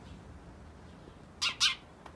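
A house sparrow close by gives two short, high chirps in quick succession, about one and a half seconds in.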